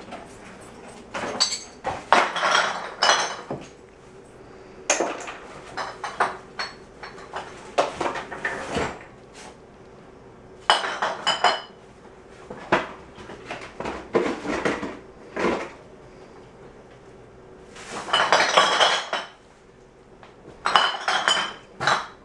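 Dishes and metal clinking and clattering in irregular bursts, each lasting up to a second, with the longest clatter about three-quarters of the way through.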